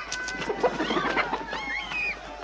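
Chickens clucking, many short calls overlapping.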